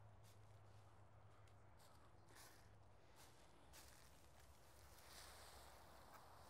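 Near silence: faint outdoor background with a low steady hum and a few faint soft ticks.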